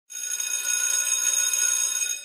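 A school bell ringing steadily and high-pitched for about two seconds, signalling the end of lessons, then fading out near the end.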